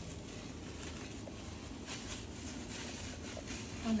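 Faint rustling of a black plastic bin bag being handled and opened, with a few light handling clicks.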